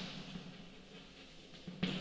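Chalk writing on a blackboard: scratchy taps of the chalk strokes, with a sharper, louder tap near the end.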